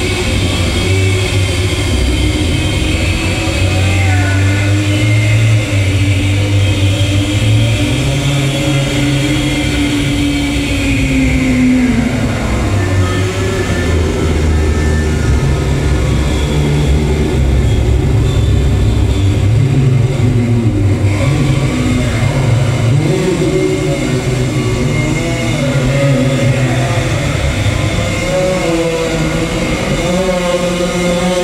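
Loud live experimental noise music: a dense, rumbling low drone whose pitch shifts in steps, with a slow downward-sliding tone about ten to twelve seconds in and a noisy wash above.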